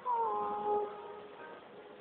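A sung note that slides down in pitch, is held briefly and fades out about a second in, leaving faint backing music.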